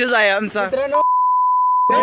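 Excited shouting, cut off about a second in by a steady one-tone censor bleep that mutes everything beneath it for about a second.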